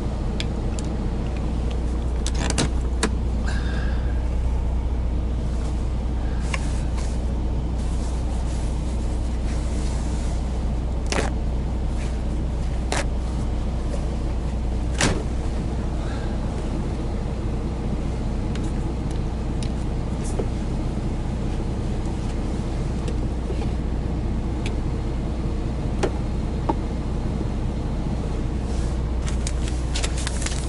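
Semi truck's diesel engine idling, a steady low hum heard inside the cab. A few sharp clicks and knocks of cups and a lid being handled sound over it.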